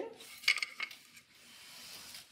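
Wooden floor loom and boat shuttle clacking as the shuttle is thrown through the shed: a sharp clack about half a second in and a lighter one just after.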